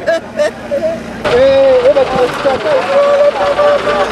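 A man wailing in grief, loud drawn-out cries that waver in pitch. The cries break off briefly about a second in, then go on in one long held cry.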